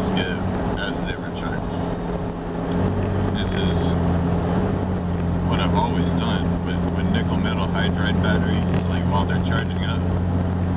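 Engine and road drone of a 1998 Jeep Cherokee heard from inside the cabin while driving. It is a steady low hum that grows louder about three seconds in, as if the engine is pulling harder.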